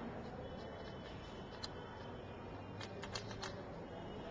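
Faint light clicks of glassware being handled while a burette is filled: one about one and a half seconds in, then a quick run of about five near three seconds, over low steady background noise.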